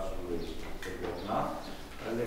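A man's voice reading aloud in short phrases with brief pauses.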